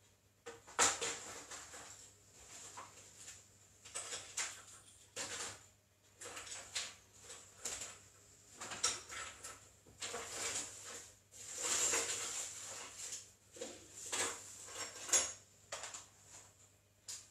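Someone rummaging off to one side: irregular rustling and clattering of objects being moved and handled, with a few sharp knocks, the loudest about a second in and near the end.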